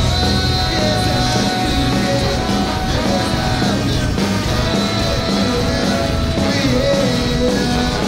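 Live ska-punk band playing at full volume: bass guitar, electric guitar and drums, with a man singing long held notes into the microphone.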